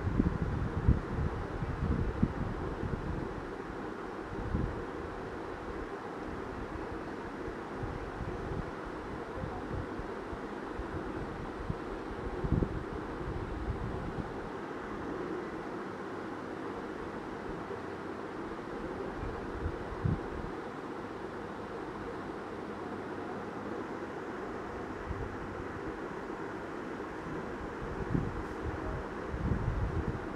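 Steady background hum and hiss of room noise, of the kind a running fan makes, with a few soft low thumps scattered through.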